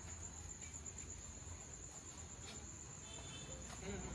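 Faint, steady, high-pitched chirring of crickets over a low hum.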